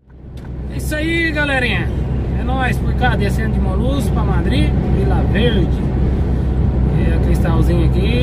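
Steady low drone of a lorry's engine and road noise heard inside the cab while driving on a motorway, fading in over the first second.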